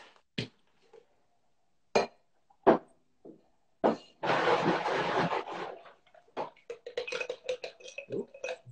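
Ice rattling inside a metal cocktail shaker tin and glass as a cocktail is shaken: a few single knocks, then a burst of rattling about four seconds in lasting a second and a half. Near the end comes a run of quick metal-and-glass clinks as the tin is knocked loose from the glass.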